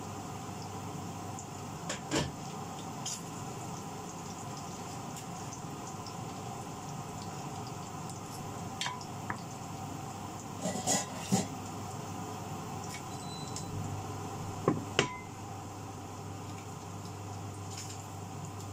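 A cooking utensil clinking and knocking against cookware now and then over a steady background noise. A few sharp knocks are spread through, with a small cluster about eleven seconds in and the loudest pair about fifteen seconds in.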